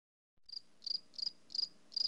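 Cricket chirping in a steady rhythm of short, high chirps, about three a second, starting about half a second in.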